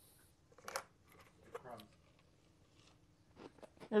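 Quiet room with a few faint sounds: a short faint voice or laugh about a second in, and small handling clicks shortly before speech resumes near the end.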